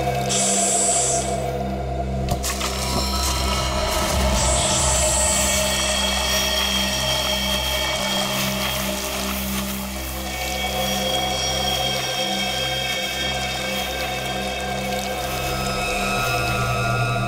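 Tense background music score of sustained, layered droning tones, with two brief high hissing swells in the first six seconds.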